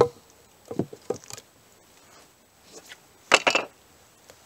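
Folding knife digging and prying into a stack of pine 2x4 boards, with a few light wooden knocks about a second in and a louder cluster of wood scraping and clattering just after three seconds in as the boards are pulled apart.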